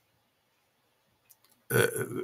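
Near silence with two faint short clicks, then a man's drawn-out hesitation sound "eh" near the end.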